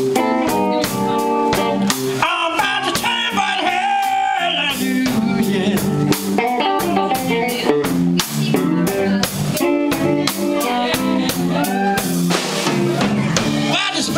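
Live blues band playing: electric guitar lines with bent notes over a drum kit's steady beat.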